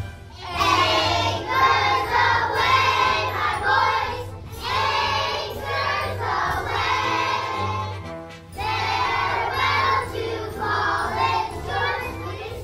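A group of young children singing together in unison over a recorded instrumental backing track, in short phrases with brief breaths between them.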